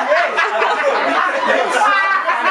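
Overlapping voices of several people talking at once.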